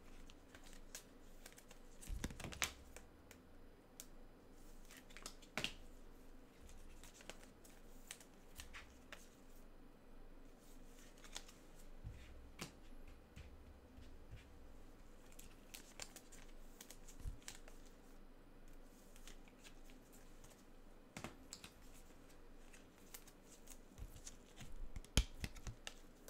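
Faint, irregular clicks and light taps of gloved hands handling trading card packs and cards, with a few sharper clicks spread through.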